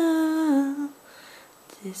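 A woman humming a held note of a tune, which dips a little lower and stops about a second in; her singing starts again right at the end.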